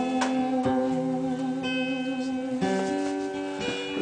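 Acoustic guitar chords strummed and left ringing, changing chord about once a second.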